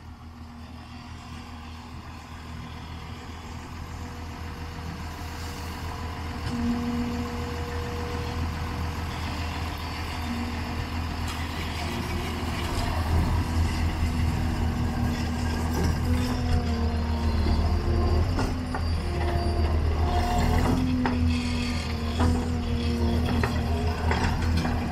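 Takeuchi TL10 compact track loader's diesel engine running as the machine travels on its tracks, growing steadily louder as it comes closer. Intermittent knocks and short tones come in over the engine in the second half.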